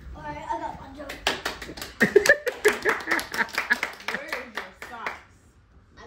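Hand clapping from a small group in quick, uneven claps, mixed with voices and laughter; it dies away about five seconds in.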